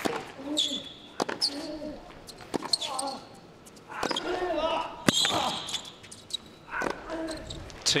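Tennis rally: a ball struck back and forth by rackets, several sharp hits a second or two apart, the loudest a little after halfway, with players' grunts on the shots.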